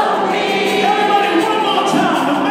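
Live rock music with a youth choir singing along with the band and orchestra, heard in a large hall.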